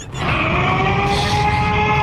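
A loud held note, rising slightly as it starts about a quarter second in and then steady, over a low rumble.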